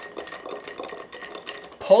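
Bar spoon stirring large ice cubes in a glass mixing glass: a quick, continuous run of light clinks and rattles of ice and spoon against the glass as a stirred cocktail is chilled and diluted.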